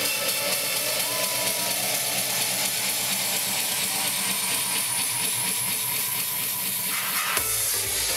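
Club dance music from a DJ set in a build-up: the low bass is cut out and a hissing sweep rises slowly in pitch, then the mids drop away briefly and the bass and kick drum come back in about seven seconds in.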